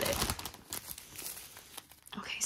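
Clear plastic zip-lock bags of diamond painting drills crinkling as they are handled and pulled out, loudest in the first half second and fading away after.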